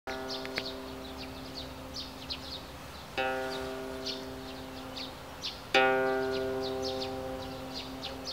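A bandura sounding three plucked chords about two and a half seconds apart, each ringing on and slowly fading, the last the loudest. Birds chirp in the background throughout.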